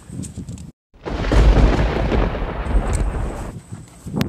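A loud, low rumbling noise that starts suddenly about a second in, right after a brief dropout, and fades out about two and a half seconds later.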